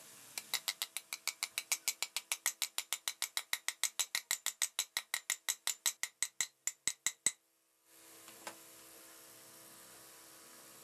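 Small hammer tapping a ball bearing into the hub of a ceiling fan's metal end cover: a fast, even run of light, ringing metal taps, about six a second, that stops abruptly about seven seconds in.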